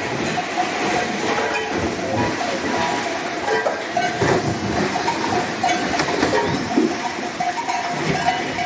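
Cattle crowding through a dip race: a continuous clatter of hooves and knocks against the race, with a hiss of water.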